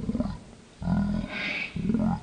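Deep roaring growls in separate bursts of under a second: one tails off just after the start, a longer one comes about a second in, and another begins near the end.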